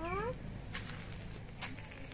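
A young girl's voice drawing out a syllable that dips and then rises in pitch at the very start, followed by quiet background with a few faint clicks.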